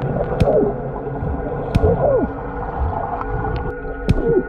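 Muffled underwater sound in a swimming pool: a steady low rumble with a few sharp clicks or knocks and short falling, whale-like tones.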